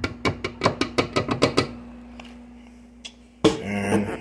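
A quick, uneven run of about a dozen sharp taps in under two seconds: a spoon knocking against the blender jar as tomato sauce is emptied out. A louder sound starts suddenly near the end.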